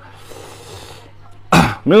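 A faint, soft hiss of watermelon flesh pulling apart as a cut slab is separated from the block. Near the end comes a short, loud, breathy burst from the man, like a cough or sharp exhale.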